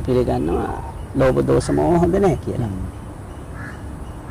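A man speaking in two short phrases, the second ending a little after halfway, then a quieter pause.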